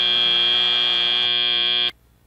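End-of-match buzzer at a FIRST robotics competition, one loud, steady electronic buzz with many overtones that cuts off suddenly near the end, signalling that match time has run out.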